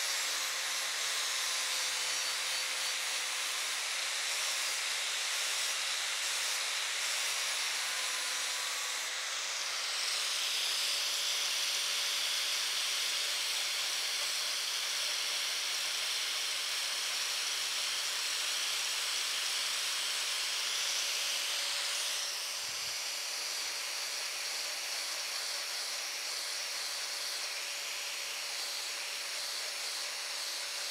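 Angle grinder on a mower-blade sharpening jig running steadily with a high whine and hiss. Its tone lifts and brightens about ten seconds in, and a single knock comes a little after two-thirds of the way through, where the sound drops slightly.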